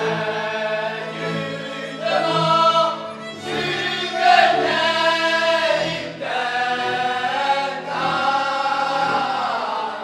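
A group of men singing a Hungarian folk song from Szék together, in long held phrases with short breaks between them.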